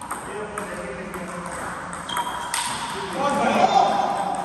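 Table tennis ball being hit back and forth in a doubles rally: sharp ticks off paddles and table, about two a second. A person's voice rises over it near the end and is the loudest sound.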